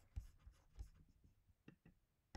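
Near silence with a few faint low bumps and, near the end, a few small clicks: desk-top handling of a computer mouse.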